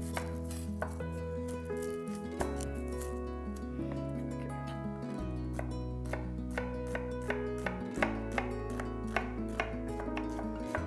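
Chef's knife dicing an onion on a wooden cutting board: a run of quick, sharp taps of the blade on the board, coming thicker and louder in the second half. Steady background music plays underneath.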